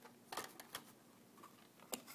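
Faint plastic clicks and taps of an HO-scale model covered hopper being handled and set down on the layout: a few scattered clicks, with a sharper one near the end.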